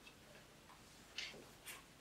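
Near silence: room tone, with two faint, short rustles of paper from sheets of a legal pad being handled, a little after a second in and again near the end.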